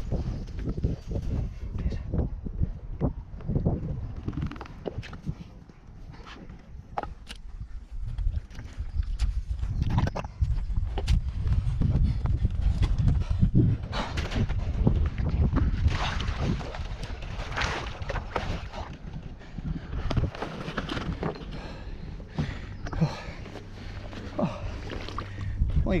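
A man breathing hard and grunting with effort as he wades through deep mud and clambers back into a kayak, with scattered knocks and scrapes against the hull.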